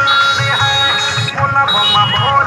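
Loud recorded music with a steady bass beat and a melody over it, played through a large loudspeaker (DJ) system.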